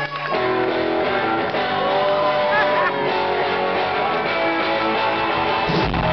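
Guitars strumming chords at the start of a live rock song, with crowd voices and whoops behind them. Deep low notes come in just before the end.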